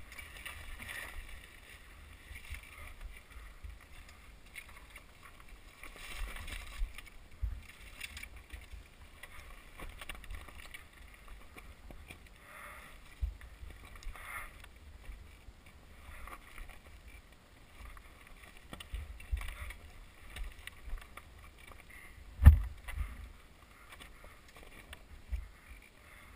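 Dirt bike ridden slowly over a rocky trail, heard muffled: an uneven low rumble with knocks as it jolts over stones, and one heavy thump about 22 seconds in.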